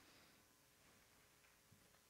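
Near silence: room tone, with one very faint tick near the end.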